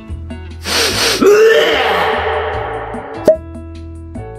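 A man's loud gagging groan of disgust after sniffing a jar of old pickled plums: a sharp noisy exhale or gasp about half a second in, then a long falling 'ueh' that trails off. A short, sharp vocal sound follows near the end, over background music.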